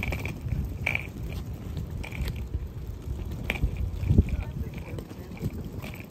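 Wheels of a rolling suitcase rumbling steadily over a concrete path, with a few sharp clicks along the way.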